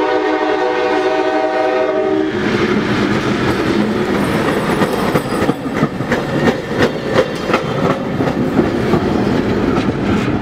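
Diesel locomotive air horn sounding a multi-note chord that cuts off about two seconds in as an LIRR MP15AC-led train reaches the crossing. The train then rumbles past close by, its wheels clacking sharply over the rail joints and the crossing in the middle seconds.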